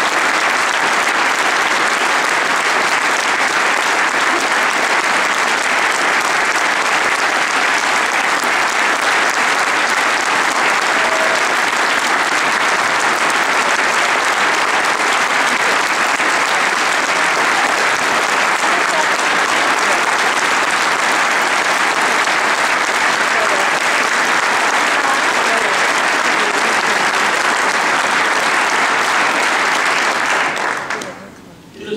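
Sustained applause from a large audience, dense and steady without a break.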